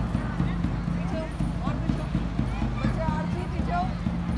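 Indistinct background voices, with irregular light knocks and scattered short high chirps over them.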